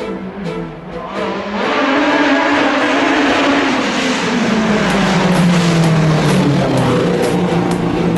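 Sports prototype race car at full throttle on a hillclimb run, its engine suddenly loud from about a second and a half in, with the engine note dropping in pitch as it goes past.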